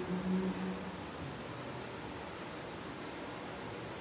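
Quiet room tone: a steady, even hiss, with a faint low hum that fades out within the first second.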